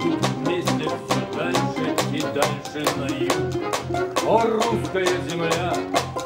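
A Russian folk-instrument ensemble plays live: domras, a balalaika and a button accordion, over a steady quick drum-kit beat of about four strikes a second.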